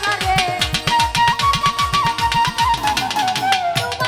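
Bangladeshi baul folk music: quick hand-drum strokes, each dropping in pitch, under a held melody line.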